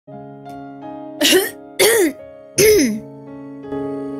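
A woman coughing three times, close to the microphone, over a soft backing track of sustained notes.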